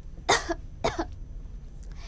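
A woman coughing twice, two short, sharp coughs about half a second apart.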